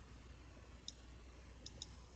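Faint computer mouse clicks over near silence: one just under a second in, then two in quick succession near the end, as an item is picked from a drop-down list.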